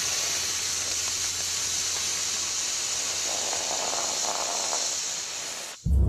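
Water poured from a bottle onto a lump of hot lava, hissing steadily as it boils off into steam; the hiss cuts off suddenly near the end.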